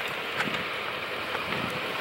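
Steady hiss of wind and falling wet snow in a snowstorm, with a few faint ticks.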